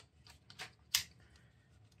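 A few small clicks and scrapes from a Sony ZV-E10 camera body being slid and seated into a SmallRig camera cage, with the loudest click about a second in.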